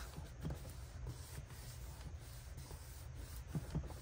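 Faint rubbing and rustling of hands sliding and pressing a vellum pocket against paper, with a few soft taps, over a low steady hum.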